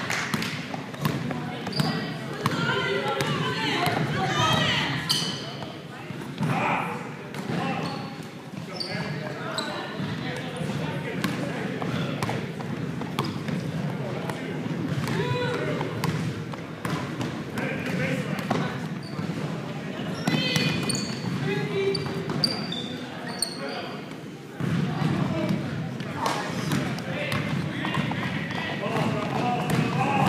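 Basketball dribbled on a hardwood gym floor, repeated bounces among running footsteps, with players and spectators calling out, echoing in the large hall.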